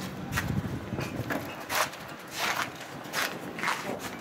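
Footsteps on brick paving, about one step every two-thirds of a second.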